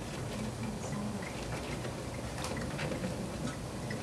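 Champagne pouring from two bottles into a glass drink dispenser of iced tea, a steady low pour sound with the faint crackle of fizzing bubbles.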